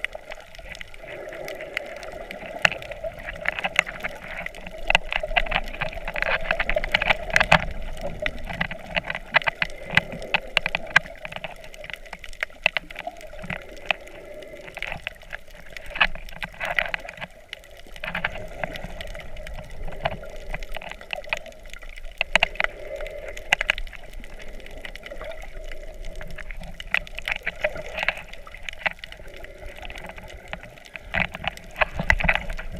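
Muffled water sound heard by a camera held underwater: a steady wash of moving water with many scattered sharp clicks and crackles.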